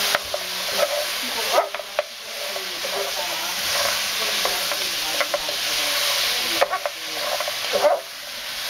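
Pork spare ribs sizzling in a hot nonstick frying pan as they are stirred and tossed with a spatula. The spatula scrapes and knocks against the pan over a steady sizzle that drops briefly twice, as the ribs brown in a soy, oyster sauce and cornstarch coating.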